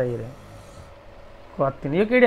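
A voice trailing off at the end of a phrase, a pause of about a second and a half with only faint noise, then a voice starting again near the end.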